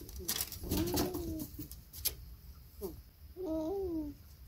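A person humming short, coo-like "mm" sounds with a rise and fall in pitch, twice: about a second in and near the end. Soft clicks and handling rustles fall between them.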